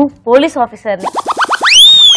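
Comic cartoon-style sound effect: about a second in, a quick run of about five short upward swoops, then one long rising whistle-like glide with overtones that peaks near the end. A woman's brief speech comes before it.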